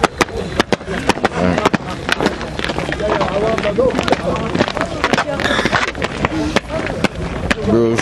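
Young footballers' voices talking among themselves, mixed with many sharp, irregular clicks and slaps throughout.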